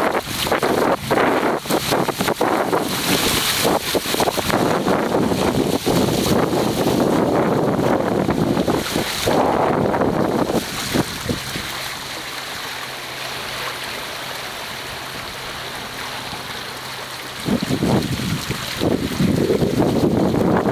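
Wind buffeting the microphone over water rushing and splashing past the hulls of a small sailing catamaran under way. About eleven seconds in it drops to a quieter, steadier rush with a faint low hum for some six seconds, then the gusty wind noise returns loudly near the end.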